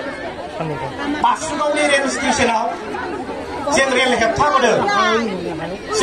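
A man speaking in Bodo, delivering a speech into podium microphones over a public address system.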